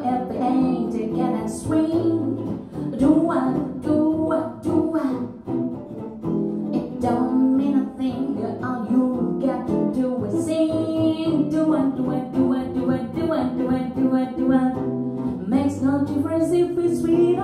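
A woman singing jazz vocals, accompanied by a hollow-body electric archtop guitar playing a swing rhythm.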